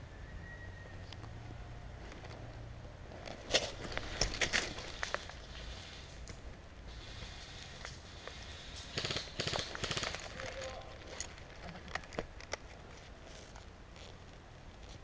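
Dry leaf litter and twigs on a forest floor crunching and crackling under a person moving and dropping to the ground, in two irregular bursts: one about three and a half seconds in and another around nine seconds.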